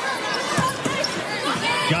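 A basketball dribbled on a hardwood court, a few bounces over the arena's background noise.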